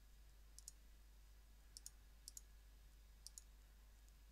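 Faint computer mouse button clicks: four quick press-and-release pairs, roughly a second apart.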